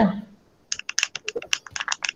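Typing on a computer keyboard: a quick, uneven run of key clicks starting a little under a second in.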